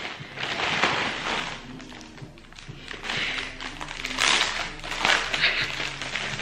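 Plastic mailing bag and the inner bag crinkling and rustling as they are pulled open by hand, in bursts with a quieter spell about two seconds in.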